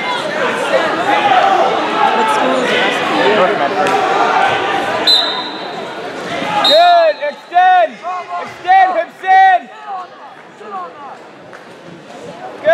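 Gym crowd chatter, with a referee's whistle blowing short steady blasts about five seconds in and again just before seven seconds as the wrestling starts. Then a series of loud, short, high-pitched yells from the stands, about five in three seconds.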